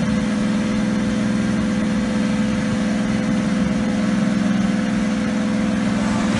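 Dodge Charger engine idling, a steady low hum with no revving.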